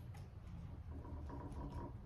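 Hand wheel roller pressed and rolled over lead tape on a tennis racquet frame, flattening the tape onto the frame: faint ticks and rubbing, with a faint thin tone about a second in.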